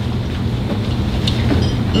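Steady low hum and rumble, with a few faint brief clicks.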